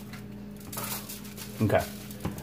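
Seasoning rub shaken from a shaker bottle onto raw meatloaf: a light, dry rattle of granules in a few short shakes.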